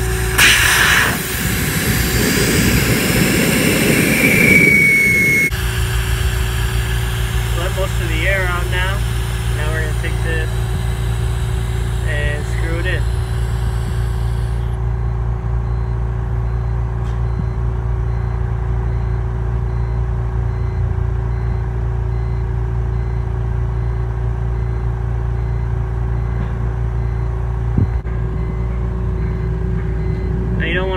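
Air hissing out of a car tyre's valve stem as the broken valve core is unscrewed with a valve core tool. The hiss is loud for about five seconds, with a thin whistle near the end, then cuts off suddenly, leaving a steady low rumble.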